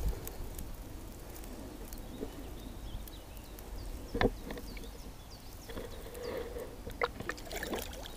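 Gentle water sloshing with a low, muffled rumble, and two faint knocks about four and seven seconds in.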